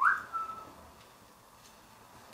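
A person whistling briefly: a quick rising whistle, then a short held note, over in under a second.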